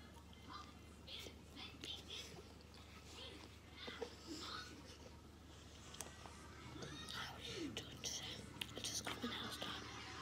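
Faint, indistinct speech close to a whisper, with a few light clicks in the second half.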